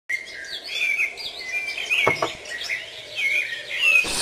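Songbirds chirping and singing without a break, a busy mix of short high calls that sweep up and down in pitch.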